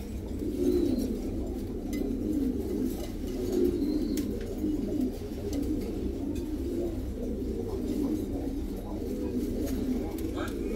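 Domestic pigeons cooing, a continuous run of low, warbling coos repeating one after another.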